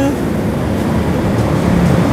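Steady road-traffic noise: an even low hum and hiss with no distinct events.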